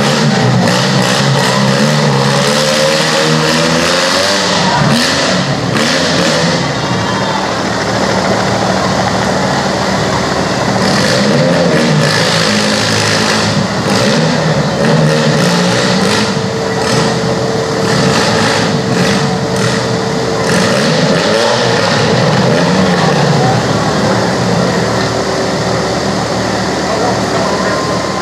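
Demolition-derby small cars running and revving, their engine pitch rising and falling in the first few seconds, with sharp crashes of metal on metal several times.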